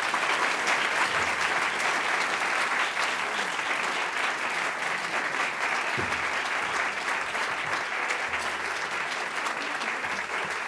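A large seated audience applauding steadily after a lecture ends.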